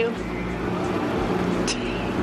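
Steady running of a river tour boat's motor heard on board, a low even hum under water and air noise, with a short click near the end.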